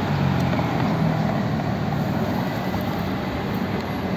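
Steady road traffic noise: an even rumble of passing vehicles with a low engine hum beneath it.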